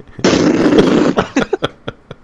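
A man making an explosion sound with his mouth: a loud noisy blast lasting about a second, followed by a quick run of short, sharp clicks that fade out.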